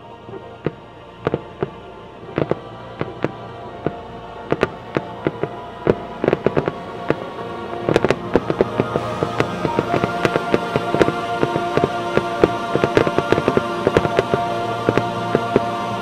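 Aerial fireworks shells bursting in a run of sharp bangs, spaced out at first and then coming much faster and denser about halfway through, with music playing underneath that grows louder as the bangs thicken.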